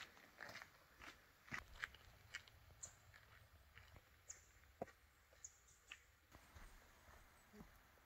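Near silence broken by faint, irregular crunches of footsteps on a gravel and dirt trail.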